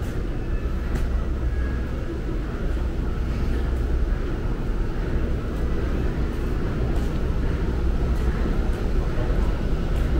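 Steady low rumbling background noise of an underground concourse, unchanging throughout, with a few faint clicks.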